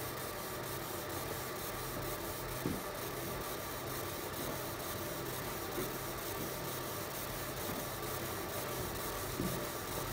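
BCX Laser fiber laser marking machine running as it engraves a picture into stainless steel: a steady, even hiss and hum with a faint, rapid fine ticking.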